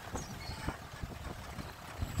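Jeep's engine and road noise heard from inside the moving vehicle: a steady low rumble with a few short knocks and rattles.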